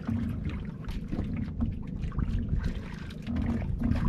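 Wind buffeting the microphone in an uneven low rumble, with water slapping and splashing against the hull and outriggers of a small wooden outrigger boat.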